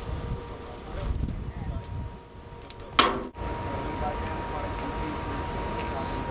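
An uneven low rumble, then about three seconds in a single loud sharp click and a brief dropout where the recording is cut, followed by steady outdoor background noise with a faint steady high hum.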